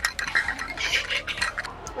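Clothing rubbing and scratching against a clip-on microphone as the wearer dances, with scattered clicks and knocks.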